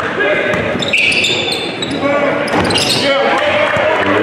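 A basketball dribbled on a hardwood gym floor, with a couple of high sneaker squeaks about a second in and again near three seconds, over voices echoing in the hall.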